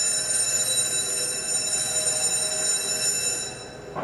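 A steady, high-pitched ringing tone made of several pitches sounding together, starting suddenly and cutting off shortly before the end.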